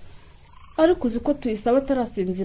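A brief quiet pause, then from about three-quarters of a second in a high-pitched voice utters quick, repeated syllables.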